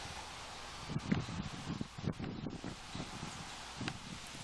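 Faint outdoor ambience from the camcorder clip's own soundtrack: a steady hiss of wind on the microphone with a few soft low bumps in the middle.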